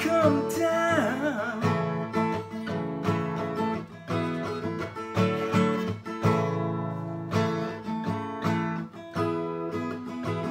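Acoustic guitar strumming chords in a steady rhythm. A sung line trails off in the first second or two, then the guitar plays on alone.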